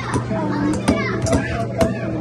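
Children's voices and chatter in a busy indoor arcade over a steady low hum, with two sharp knocks about a second apart.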